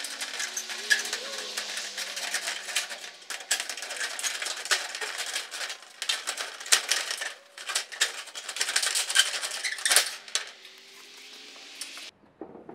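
Tin snips cutting a galvanized corrugated steel roofing sheet: a quick, continuous run of sharp metallic crunches and clicks as the blades bite through the sheet, with short pauses about seven and ten seconds in.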